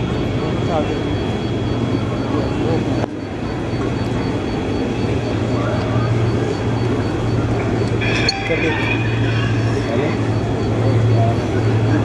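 Large multirotor camera drone hovering low, its rotors giving a steady low hum.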